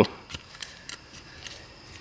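A few faint, light clicks and rustles from a gloved hand handling the removed metal dipstick tube.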